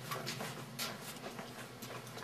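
A few faint, irregular taps over a steady low hum.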